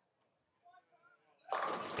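Near silence with a few faint distant voices, then a man's commentary voice starts about one and a half seconds in.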